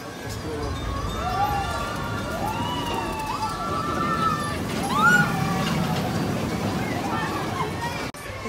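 A family roller coaster train running along its steel track with a low rumble that swells in the middle, while its riders whoop and shout.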